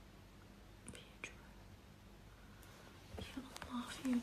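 Mostly quiet room tone with a faint steady hum, broken by two short faint clicks about a second in. From about three seconds in, a woman starts whispering softly.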